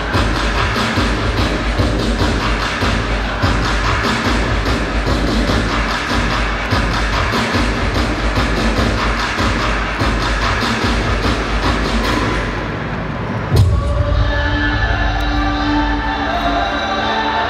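Dance music played loud over an arena sound system: a heavy beat with strong bass. About thirteen and a half seconds in there is a sudden hit, and then the beat drops out under held, sustained tones.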